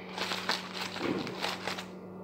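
Aluminium foil crinkling and crackling as it is peeled off a chocolate cake, in a quick run of small crackles for most of the two seconds.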